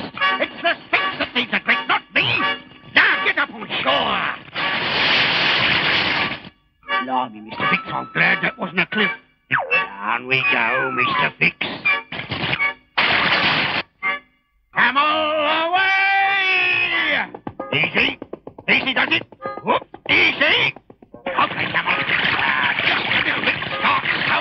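Animated cartoon soundtrack: music with comic sound effects and wordless vocal noises, broken by short pauses, with stretches of rushing noise and a wavering, sliding cry about sixteen seconds in.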